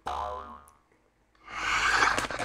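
Metallized plastic snack bag crinkling loudly as it is torn open down its side, starting about one and a half seconds in. Right at the start there is a short pitched sound that falls in pitch over about half a second.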